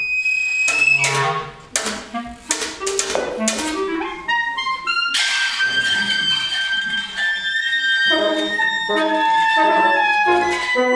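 Wind quintet of flute, oboe d'amore, clarinet, bassoon and horn playing contemporary chamber music. Short, clipped attacks and chords fill the first half. About halfway through come long held high notes, and lower notes join near the end.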